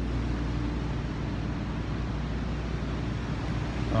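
Steady low hum and rushing background noise with a faint steady tone, the ambient drone of an underground parking garage.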